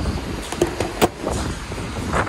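A fuel pump nozzle being hung back in its holster on the dispenser, with one sharp clunk about a second in, over steady background noise.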